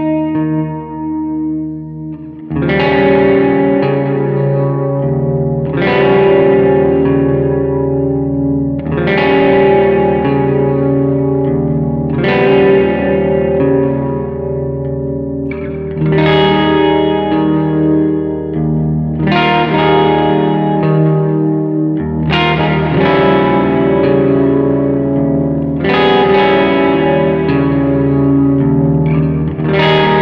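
Solo electric guitar played through a Fender Princeton amplifier with effects and some distortion: a held chord rings for about two seconds, then chords are struck about every three seconds, each ringing out over a steady low tone.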